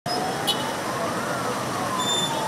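Street traffic noise with a siren wailing: its pitch rises slowly for just over a second, then starts to fall. A brief click about half a second in.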